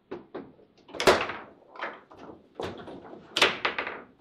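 Foosball table in play: a run of sharp knocks and clacks from the ball and the plastic men on the rods, at irregular intervals, loudest about a second in and again about three and a half seconds in.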